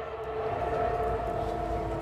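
A steady hum of several held tones from a rally's public-address loudspeakers, over a low outdoor rumble.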